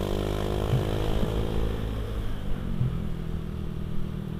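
Honda Beat Street 110 cc single-cylinder scooter engine running at a steady cruise of about 40 km/h, over road and wind noise. Its note rises a little in the first second, then eases off slowly.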